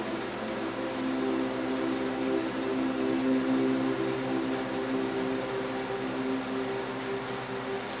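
Background music alone: a soft ambient drone of several held tones that swell gently, with no voice over it.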